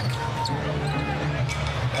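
Basketball game court sound: a ball being dribbled on the hardwood floor over the steady murmur of an arena crowd.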